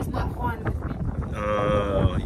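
A person's long held 'mmm'-like vocal sound, steady in pitch, starting about a second and a half in, over wind buffeting the microphone.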